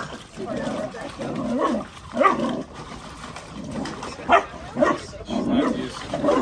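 Puppies barking during rough play, a few short sharp barks in the middle of the stretch, over people's voices and laughter.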